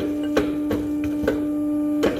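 A steady machine hum with a handful of sharp metallic clicks, a third to half a second apart, as a hydraulic cylinder presses a steel bar against a bending block.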